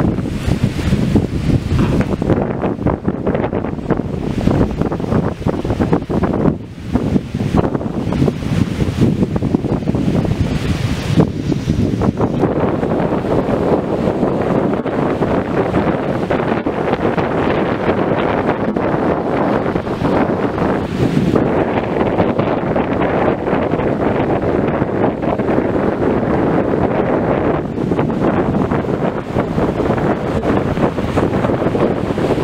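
Strong wind buffeting the microphone in a continuous low rush, over choppy water washing against the shore.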